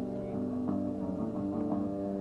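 Music: a guitar playing a steady run of sustained notes, with no singing.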